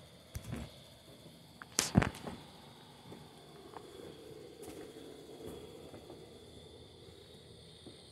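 Handling noise on a phone's microphone: a few short rubs and bumps, the loudest about two seconds in, then a faint low rumble, over a faint steady high tone.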